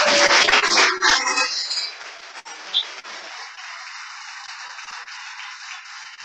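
Audience applauding. The clapping is loudest in the first second and a half, then carries on more softly.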